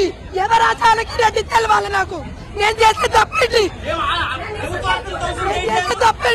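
Speech: a woman talking, over the chatter of a crowd around her.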